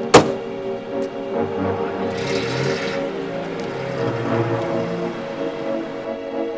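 Background music with steady held tones, and a car door slamming shut just after the start. A short rush of hiss follows about two seconds in.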